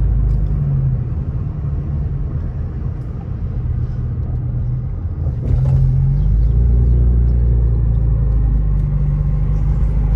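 Car driving, heard from inside the cabin: a steady low rumble of engine and road noise. It eases off a little about a second in and grows louder again about halfway through.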